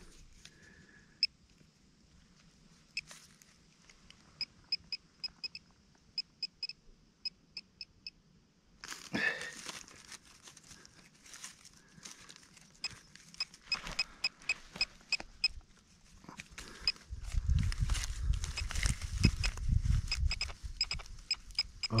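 Handheld metal-detecting pinpointer beeping in runs of short, quick high pips as its probe is worked through loose soil, signalling metal close to the tip. Low scuffing and rustling of soil being handled near the end.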